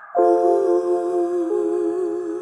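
A man's wordless vocal note, held with vibrato, over a sustained chord on a Casio Privia PX-S1100 digital piano; the chord changes about one and a half seconds in.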